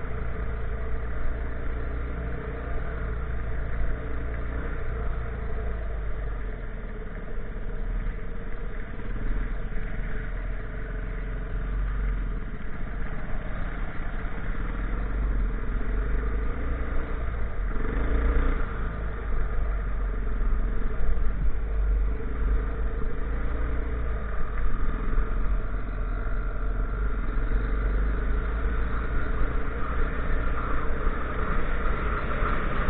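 Off-road motorcycle engines running while riding along a gravel track, the pitch shifting slightly as the speed changes, with a heavy rumble of wind on the microphone.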